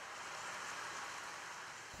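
Faint, steady hiss of rain, even throughout, with no low rumble.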